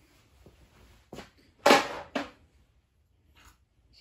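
Three short metal clanks, the loudest about halfway through, as a dial indicator on its magnetic base is pulled off the engine block and set down.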